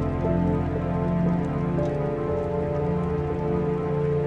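Slow, melancholic piano music with sustained low bass notes beneath it, over a steady patter of rain.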